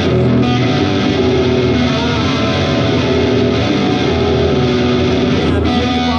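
Electric guitar played live through an amplifier with effects, a steady instrumental passage without singing.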